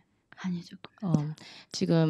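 Speech only: a soft, low voice speaking, growing louder near the end.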